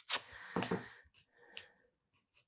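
Double-sided tape pulled off its roll and torn: a short ripping rasp lasting under a second, followed by a couple of faint ticks.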